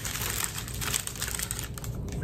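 Paper wrapper crinkling and rustling in the hands as it is pulled off a freeze-dried ice cream sandwich, a run of quick, irregular crackles.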